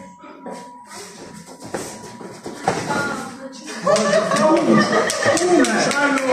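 Scattered light shuffles and taps of fighters moving in a sparring ring. From about four seconds in, people are talking.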